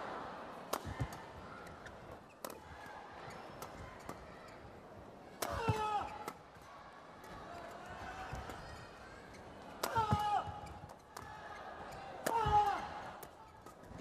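Badminton doubles rally: sharp cracks of rackets striking the shuttlecock at irregular intervals. Three louder, short, high squeaks come about five, ten and twelve seconds in.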